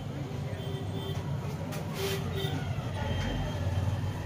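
Steady low hum and rumble of background noise, with a few soft clicks about two seconds in.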